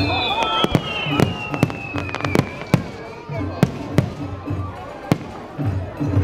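Aerial fireworks bursting overhead: a rapid, irregular string of sharp bangs and crackles, with a high whistle falling slowly in pitch over the first couple of seconds.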